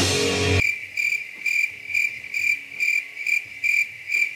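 Crickets chirping in an even rhythm of about two to three chirps a second, after rock band music cuts off abruptly about half a second in.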